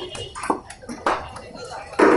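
Voices chattering around a busy puri frying stall, with a few short sharp clinks and knocks from the cooking tools and dough handling.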